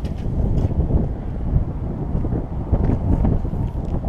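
Wind buffeting the microphone, a low rumble that rises and falls in gusts.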